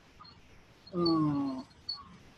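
A man's voice making one drawn-out vowel sound, falling slowly in pitch and lasting under a second, about a second in. The sound stands alone in a pause in his talk.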